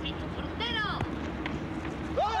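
A man shouting a heckle at the goalkeeper, then a single sharp thud about a second in as the penalty is kicked, over a steady low outdoor hum.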